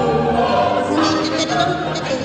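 Music with a choir singing: held, sung notes that change pitch every half second or so.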